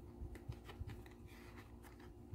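Faint, scattered light clicks and rustles of grated cheese being shaken from a plastic container onto cooked elbow macaroni in a steel pot.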